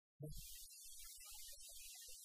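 Faint room tone: a steady hiss with a choppy low hum, and no distinct event.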